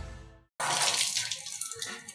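Background music fades out, and about half a second in water splashes down and then thins into trickling and dripping.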